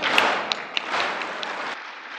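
Audience applause, with many hands clapping, slowly fading and then cut off abruptly near the end.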